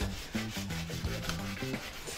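A long slicing knife gliding flat along a plastic cutting board between salmon skin and flesh as the skin is pulled away: a steady rubbing scrape.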